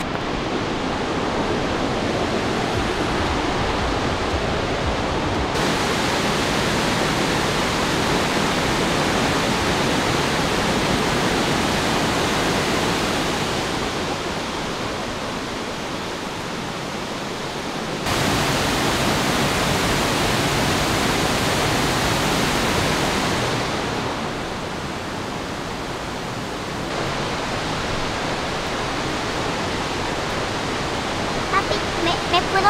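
Steady rushing roar of Burney Falls, a tall waterfall pouring into a gorge. Its loudness jumps up and down suddenly a few times.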